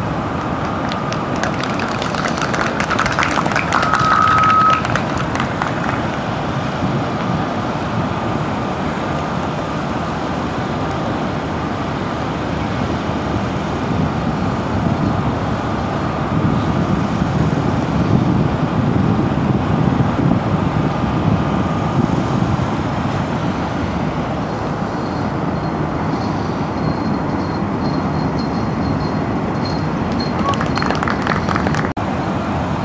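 Steady outdoor background noise, a low rumble that rises and falls slightly, with a brief high tone about four seconds in.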